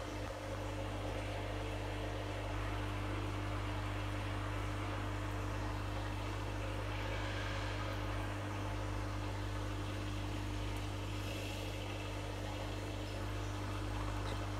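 A steady low mechanical hum with a few constant tones under a faint hiss, even and unchanging throughout.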